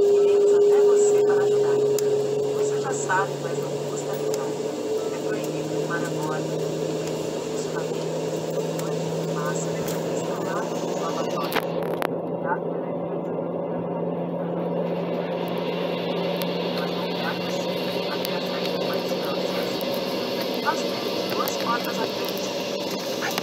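Cabin noise inside an Embraer ERJ 195 on the ground: the twin turbofan engines' steady hum with a low whine that creeps slightly upward in pitch. It is louder for the first few seconds, then settles.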